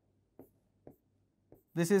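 Pen tip tapping on a writing screen while letters are drawn: three faint, short taps about half a second apart.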